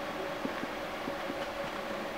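Steady hall room noise with a faint constant hum, broken by a few soft knocks from movement around the piano on the wooden stage.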